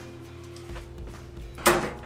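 A steady low tone, then one sudden loud clank about a second and a half in.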